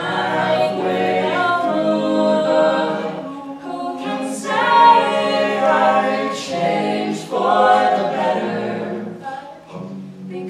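Co-ed a cappella group singing unaccompanied in harmony, men's and women's voices together over a held low note, in phrases with brief pauses between them.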